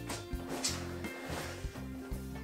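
Soft background music with held notes.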